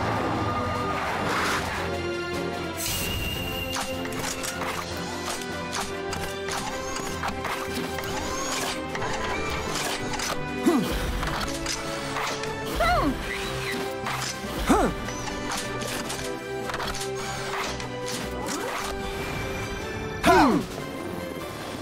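Upbeat cartoon action music with robot-transformation sound effects: mechanical clicks and whirs, and three loud hits with swooping pitch about two seconds apart in the second half.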